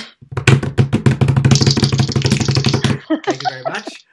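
A vocal drumroll: a rapid rolled "drrrr" made with the voice, held for about three seconds, then a brief laugh near the end.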